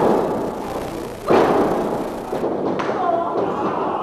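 Heavy thuds of wrestlers' bodies hitting a wrestling ring's mat: one loud slam about a second in that fades out slowly, and a lighter thud near the end, with voices in the hall.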